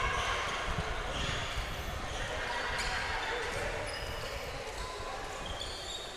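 Hall noise of an indoor basketball game: low crowd chatter echoing in the gym, with a few soft basketball bounces on the hardwood court.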